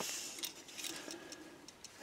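Faint ticks and soft rustling of hands handling a paintbrush and a metal helping-hands clamp, with a sharper click at the start.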